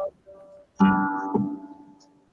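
A guitar chord strummed about a second in, ringing out and fading away, after a fainter single note just before it.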